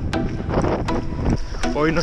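Wind buffeting a handheld action camera's microphone in open desert, with a few sharp knocks scattered through.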